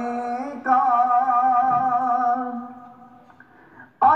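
A man singing a naat, an Urdu devotional poem: a short phrase, then one long held note that fades away about three seconds in. The sound comes through a television speaker.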